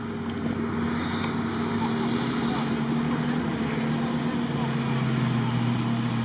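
Off-road vehicle engine idling steadily, a constant low hum with no change in revs.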